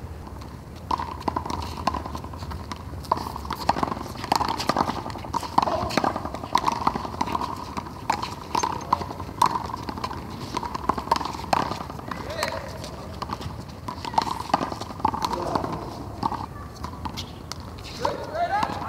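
A handball rally: sharp, irregular slaps of the small rubber ball struck by hand and hitting the concrete wall, mixed with players' quick footsteps on the court.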